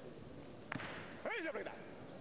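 A sharp thud as a 140 kg barbell is caught in the clean, then a brief shout with a wavering pitch about half a second later.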